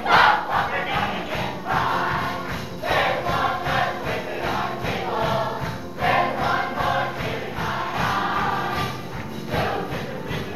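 A musical-theatre cast singing in chorus over a lively, up-tempo accompaniment, heard live in the auditorium; the singing comes in loudly right at the start.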